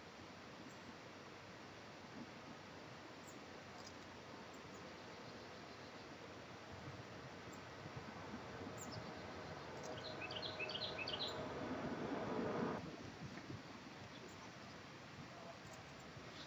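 Quiet outdoor ambience with a small bird's quick run of high chirps about ten seconds in. A low rumble with a faint hum swells from about seven seconds and cuts off suddenly near thirteen seconds.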